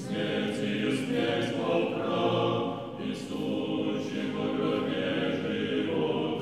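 Church choir singing Orthodox chant, several voices holding sustained chords that change every second or so.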